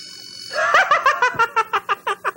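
A steady electronic buzzer-like tone for about the first half second, then a man laughing in a quick, even run of ha-ha bursts.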